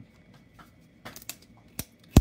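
Small, sharp clicks and taps of hard plastic packaging being handled as an egg-shaped toy case is opened: a few quick clicks about a second in, then a single sharper click near the end.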